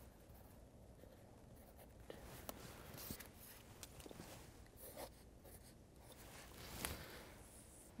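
Faint scratching of writing on a paper sketch pad, in a few short scattered strokes, with light handling of a measuring tape, over a near-silent room.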